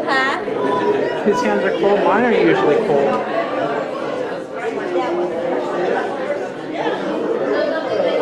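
Many people talking at once as a congregation mingles and greets one another, a steady babble of overlapping voices in a large hall.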